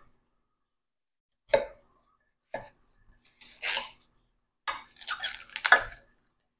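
Kitchen knife cutting through a watermelon's rind and flesh: a few short, separate cutting sounds with silence between them, the longest cluster near the end.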